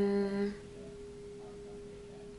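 A woman's brief closed-mouth hum, a thoughtful "mm" that slides up in pitch and holds for about half a second at the very start. A faint steady tone runs underneath.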